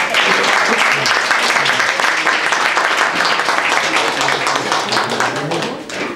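Audience applauding: a dense, steady round of clapping that starts all at once and eases off near the end.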